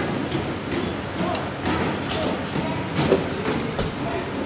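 Café room noise: a steady background din with faint, indistinct voices and a few short clicks and clinks.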